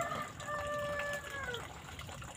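A rooster crowing: one long held call that drops in pitch as it fades out.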